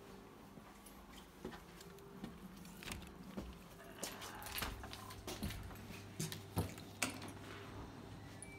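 A door being opened and passed through, with sharp clicks and knocks from the latch and door and from handling, the loudest two near the end, over a steady low hum.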